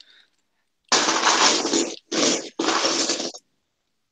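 Loose plastic LEGO bricks clattering as a hand rummages through a pile of them, in three bursts, the first the longest.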